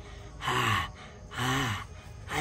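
A man gasping twice, each a short voiced, breathy gasp about a second apart.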